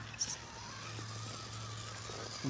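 Dual 37-turn 380-size brushed motors and gear train of a Danchee RidgeRock RC rock crawler running as it crawls over rock: a steady low hum under a fainter, slightly wavering higher whine.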